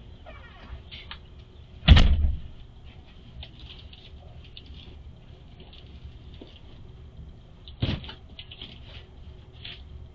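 A loud thump about two seconds in, then light taps, crinkles and rustling of cardboard boxes and plastic mailers being picked up and handled, with a second, smaller thump near eight seconds.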